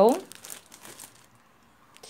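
Plastic wrapping on a multi-roll pack of paper towels crinkling as the pack is handled and moved, dying away after about a second.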